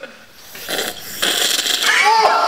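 A person snorting fruit soda up the nose through a drinking straw: harsh nasal sucking that starts about half a second in and grows louder in the second half.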